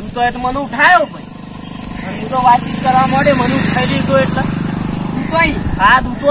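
A motor vehicle's engine passing by, growing louder over the first few seconds and then slowly fading, under men's voices.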